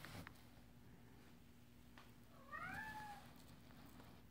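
A cat meows once, briefly, about two and a half seconds in, over near-silent room tone with a faint steady hum.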